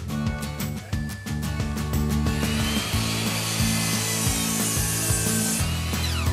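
A power tool running on wood for about three seconds, starting a little after two seconds in, over background music.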